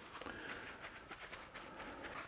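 Faint rustling and soft ticks of hands handling raw beef short ribs, their plastic packaging and a paper towel.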